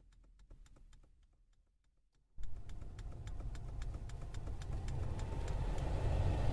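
Rapid, evenly spaced clicks, about five a second, as the Toyota Yaris's climate-control temperature button is held down to step the setting lower. About two and a half seconds in, the air-conditioning blower comes on and speeds up steadily, a rushing sound with a faint whine, as the automatic climate control raises fan speed for the lower set temperature.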